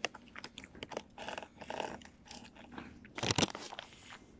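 A person chewing something crunchy close to a phone's microphone, with many sharp clicks. About three seconds in comes a louder rustling bump as a hand moves close to the phone.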